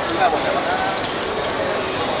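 Voices shouting and calling out during play, with one sharp thud about a second in, a football being kicked.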